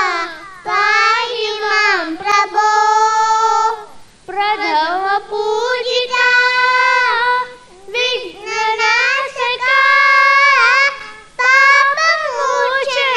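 A group of children singing a devotional prayer song in unison into microphones, in phrases of a few seconds with long held notes and short breaks for breath between them.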